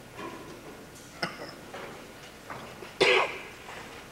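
Hushed concert-hall pause before the band plays: a sharp click a little over a second in, a few faint ticks, and a short cough about three seconds in, the loudest sound.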